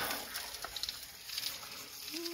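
A hand scooping washed pea gravel from a plastic bucket, the small stones clicking and rattling faintly against each other.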